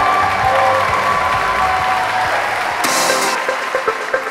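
Wedding guests applauding and cheering, with music playing underneath; near the end a beat comes in.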